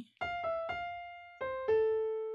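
Piano playing a single-note right-hand melody: F, E, F, C, then a lower A that is held and rings on, fading.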